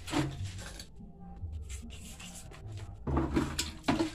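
Clattering and scraping as a small metal water tap is handled against a pipe fitting in a concrete wall, in two bursts: one right at the start and one about three seconds in, with light rubbing between.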